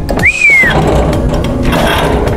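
Cattle being loaded up a chute into a livestock truck: hooves knocking and clattering on the chute and trailer floor. Near the start a short whistle rises and then falls in pitch.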